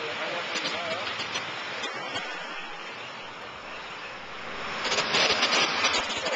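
City street traffic noise, with a van passing close to the microphone near the end and making it loudest there.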